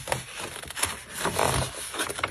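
A printed wrapping sheet rustling and rubbing as it is folded around a clear plastic press-on nail box, in a few uneven swells of handling noise.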